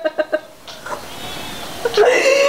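Women laughing hard: a fast run of staccato, cackling laugh pulses that stops about half a second in. It gives way to quieter breathy laughter.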